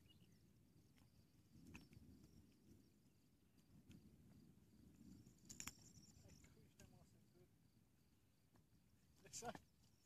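Near silence: faint outdoor ambience with a few soft clicks and taps.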